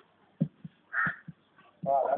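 A mostly quiet stretch, broken by a soft knock and one short harsh call about a second in; a voice starts speaking near the end.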